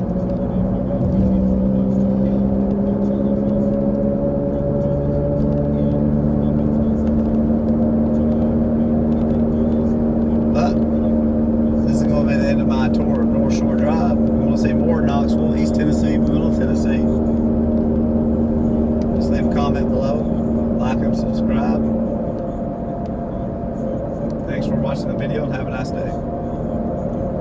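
Car engine and drivetrain humming inside the cabin while driving, with a steady pitched drone that rises a little as the car gathers speed in the first few seconds, holds steady at cruise, then eases off about four seconds before the end.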